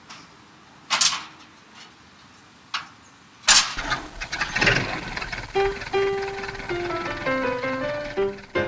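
Sharp metallic knocks from the hand crank of an antique Chevrolet being turned, then a loud bang about three and a half seconds in. Plucked-string music with single notes follows from about halfway.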